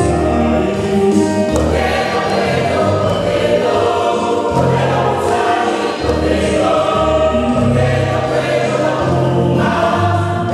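Mixed choir of women and men singing a gospel song together over held low bass notes that change about once a second.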